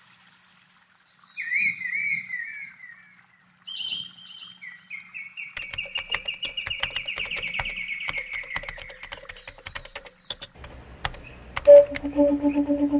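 Birdsong: a few warbling chirps, then a long run of quick repeated notes that slowly fall in pitch, with sharp clicks among them, fading out near the end.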